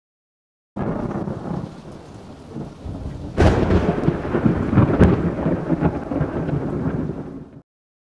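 Thunderstorm sound: rain with rumbling thunder that starts suddenly under a second in, a sharp thunderclap about three and a half seconds in and another crack around five seconds, cutting off abruptly just before the end.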